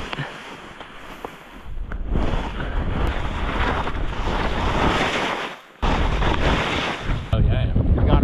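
Rushing wind noise on a ski camera's microphone while skiing downhill through snow, with the skis hissing over the snow. The noise grows louder about two seconds in and drops out briefly near the end.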